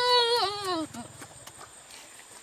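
A boy's high-pitched drawn-out 'ooh', held and then sliding down in pitch as it trails off about a second in, followed by faint clicks.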